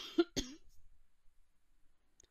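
A woman coughs three times in quick succession, short sharp coughs.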